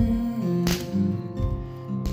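Nylon-string classical guitar strummed, its chords ringing on between strokes: one strum about two-thirds of a second in and another about a second and a half in.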